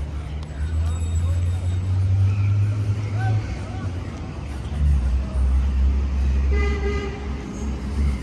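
City traffic rumbling around the park, with one short vehicle-horn toot near the end and faint voices in the background.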